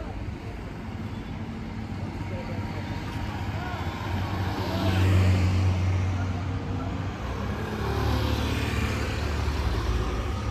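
Motor vehicles passing close by on a street, engine hum swelling to its loudest about halfway through and again near the end, with faint voices of passersby underneath.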